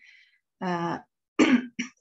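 A person clearing their throat between sentences: a short breath, a held voiced sound about half a second in, then two short sharp voiced bursts near the end.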